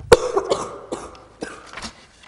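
A person coughing and clearing their throat in a room: several short, rough bursts, the first and loudest right at the start.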